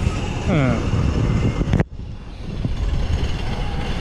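Low, irregular wind rumble on the microphone of a camera riding an open chairlift, with a single voice sliding down in pitch about half a second in. The sound breaks off abruptly just under two seconds in, then the rumble resumes more quietly.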